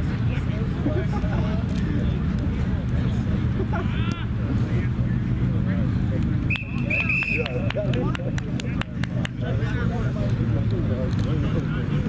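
A referee's whistle gives two short blasts just after a rugby conversion kick, about six and a half seconds in, followed by a scatter of sharp claps. Faint voices and a steady low rumble of road traffic run underneath.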